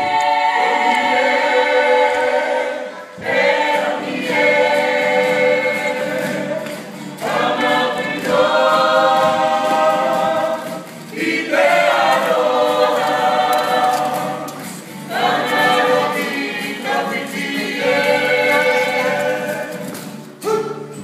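A group singing a Māori poi song together to strummed acoustic guitars. The singing comes in phrases of about four seconds, with short breaks between them.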